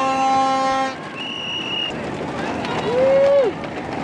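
A horn sounds a steady, rich blast that stops about a second in, followed by a short high steady tone and, near three seconds, a brief tone that bends up and then falls, over crowd noise.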